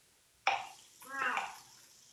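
A person's voice: two short spoken sounds without clear words, the first starting suddenly about half a second in, the second about a second later.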